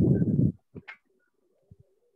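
A loud burst of low rumbling noise that stops about half a second in, then a dove cooing faintly in the background of a call participant's microphone.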